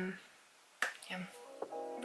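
A single sharp finger snap a little under a second in. Background music with plucked notes begins near the end.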